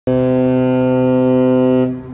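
Oil tanker's horn giving one long, loud, steady blast, starting abruptly and cutting off just before two seconds, leaving a fainter lingering tone: a warning to a smaller boat in its way.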